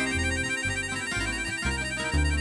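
Harmonica holding a warbling, trilled chord in an instrumental break of a swing-blues number, over plucked bass notes stepping about every half second and the band's guitars.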